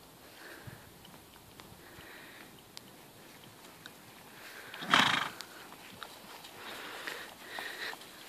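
Horse cantering on grass with faint, soft hoofbeats, and one loud, breathy blow from the horse just before five seconds in.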